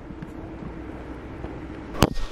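Steady low background rumble of room noise, with faint light ticks. A sharp knock of handling noise on the microphone comes right at the end as the camera is turned.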